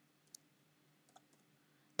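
A few faint, short keyboard key clicks as code is typed.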